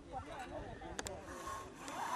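Faint voices of people talking in the background, with a single sharp click about halfway through.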